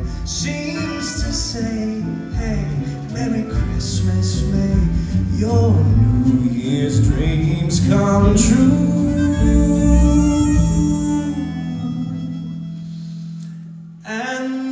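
Live band music with a singer, building to a loud held closing chord about eight seconds in that slowly dies away near the end.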